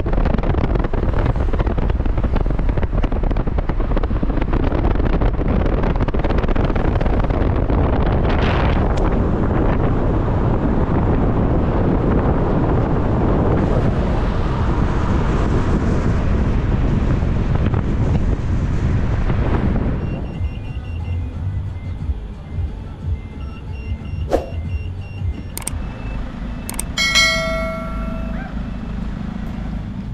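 Road and wind noise of a moving vehicle, a steady low rumble that drops away about twenty seconds in. Afterwards it is quieter, with faint steady tones, a click and a short pitched tone near the end.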